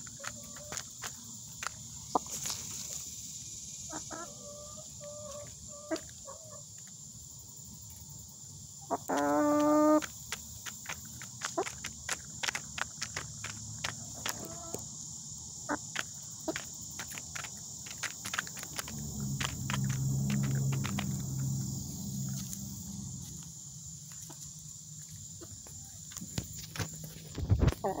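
Hens pecking pellets from a plastic feeder: a steady run of sharp beak taps, with a few soft clucks and one loud squawk about nine seconds in. A low rumble comes in around twenty seconds in.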